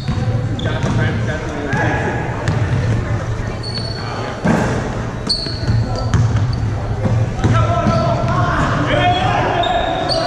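Basketball game on a hardwood gym floor: the ball bouncing in repeated knocks, sneakers giving short high squeaks, and players' voices, all echoing in the large hall. The voices grow louder near the end.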